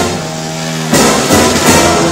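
Brass marching band with sousaphones playing a march: a held chord for about the first second, then the full band comes back in louder with drums.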